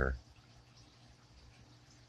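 The last syllable of a man's speech cuts off right at the start, then near silence: faint room tone.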